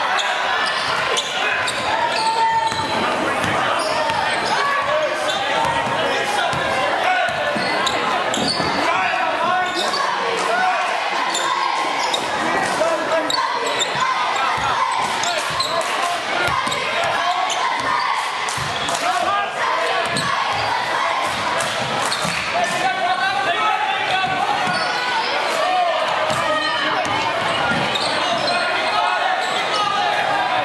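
Crowd chatter echoing in a school gym, with a basketball bouncing on the hardwood court in short knocks throughout.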